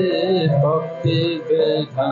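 Kirtan: a voice singing a devotional chant in a gliding, held melody over steady instrumental accompaniment.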